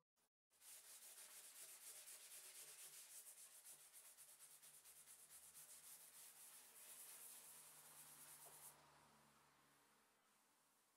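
A sanding pad rubbed by hand along a painted wooden table edge in fast back-and-forth strokes, soft and scratchy, stopping about nine seconds in. The paint on the edge is being worn through to distress it.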